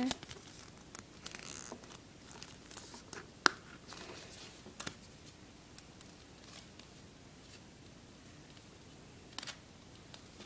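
Faint rustling and scraping of the screen protector's card and paper packaging as it is pulled out and handled, with one sharp click about three and a half seconds in and another brief rustle near the end.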